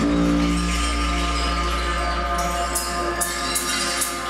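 Live electronic music played through speakers: a steady low drone under several held tones, joined from about two and a half seconds in by short, bright hissing hits at an uneven pace.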